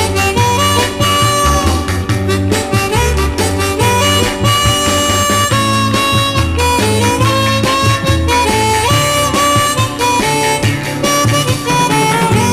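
Instrumental break in a 1960s beat-group recording: a harmonica carries the lead melody over a band playing a steady beat with a moving bass line.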